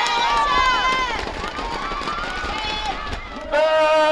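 Several high-pitched women's voices shouting and cheering over one another, rising and falling in pitch, as a goal is celebrated. About three and a half seconds in, a louder, steady held tone begins.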